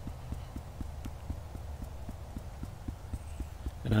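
Fingertips tapping on the collarbone point in EFT tapping: a quick, even patter of light taps, several a second.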